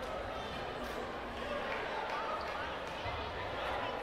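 Indistinct chatter of spectators echoing in a sports hall, with a few soft thuds.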